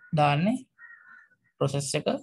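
A man's voice speaking: one drawn-out syllable whose pitch rises, a pause, then a short burst of speech near the end.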